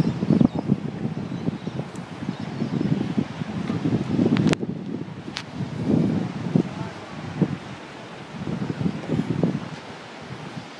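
Wind gusting over the microphone, rising and falling in uneven surges, with two short sharp clicks about halfway through.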